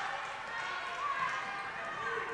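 Basketball being dribbled on a hardwood gym floor under the murmur of a crowd in the gym.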